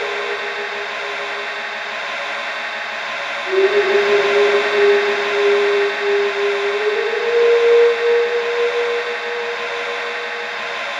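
Experimental electronic drone made from heavily processed, looped recordings of jingling keys, voice and body percussion. A dense, shimmering texture sits under one strong held tone, which steps up in pitch about a third of the way in and again about two thirds in, growing louder after the first step.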